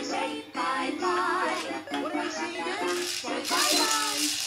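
Electronic children's song playing from a battery-powered musical toy train: a tinny synthesized melody with a sung voice, and a shaker-like rattle near the end.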